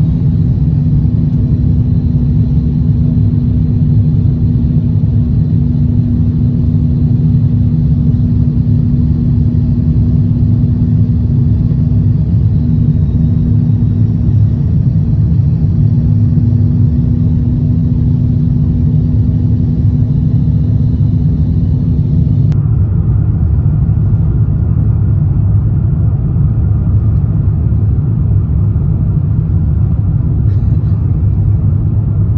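Airliner cabin noise from a window seat of an Airbus A350-1000 on descent: a steady deep rumble of engines and airflow with a steady hum over it. About three-quarters of the way through the sound changes abruptly: the hum stops and the rumble goes on.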